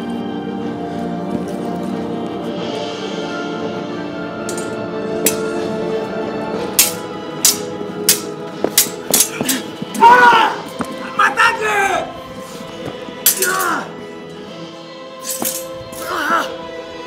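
Swords clashing again and again in a stage fight over steady background music, the strikes starting about five seconds in and coming thick between about seven and sixteen seconds. Pained shouts and grunts break in between the strikes.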